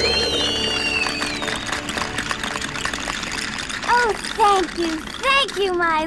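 Cartoon soundtrack: a music bed with a watery trickling texture and whistle-like gliding tones near the start. From about four seconds in comes a run of short, high, squeaky vocal calls, each rising and falling in pitch, with no words.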